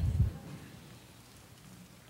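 A brief low rumble in the first half-second, then faint room tone.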